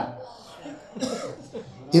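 A short break in a man's amplified devotional singing: his sung line stops right at the start and the next line begins just at the end. In between there is only faint low sound, with a brief soft vocal noise about a second in.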